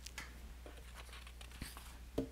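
Faint rustling and crinkling of paper notes being handled at a lectern, with a few light ticks over a low steady room hum.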